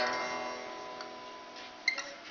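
Guitar accompaniment between sung lines: a chord rings on and slowly fades, with a short picked note near the end.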